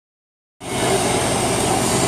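Silence for about half a second, then the steady background noise of a working repair shop: an even hiss with a low machine hum, from ventilation or machinery running.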